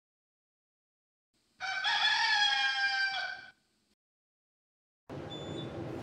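A rooster crowing once: a single long call of about two seconds. Near the end, the steady background hum of an elevator car begins.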